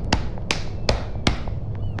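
Body-percussion rhythm of four sharp hand slaps and pats, evenly about 0.4 s apart, played on the chest and body.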